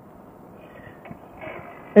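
Quiet outdoor background: a faint, even hiss with no distinct event, in a short pause between spoken sentences.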